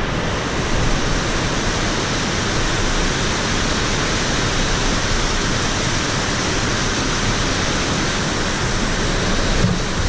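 Whitewater of a mountain creek rushing down rock cascades, a loud, steady rush of water close to the microphone.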